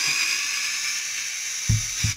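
Small cordless electric screwdriver running steadily with a high whine as it backs a T10 screw out of a battery pack's plastic case, cutting off abruptly near the end.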